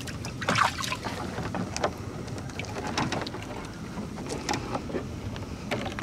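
Water splashing and dripping around a small wooden boat as wet gill net is handled, with scattered light knocks and clicks against the hull.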